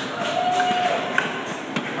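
Two light knocks of a kitchen knife and cutting board, about a second in and again shortly after, over the steady murmur of a crowd in a large hall.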